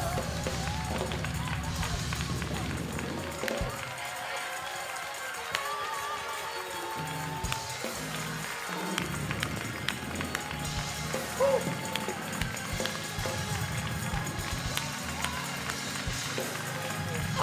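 Soft gospel church music: low bass or organ notes with the choir's singing trailing off, under scattered voices and shouts from the congregation and a few sharp claps.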